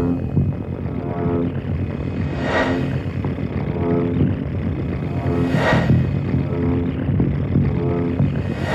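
Electronic tape music: a low throbbing drone with held pitched tones, and a rushing noise swell that rises up through it twice, about three seconds apart.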